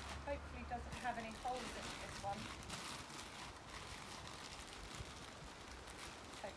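Thin plastic carrier bag rustling and crinkling as hands rummage through it.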